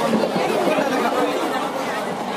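Overlapping chatter of many passengers talking at once in a crowded train carriage.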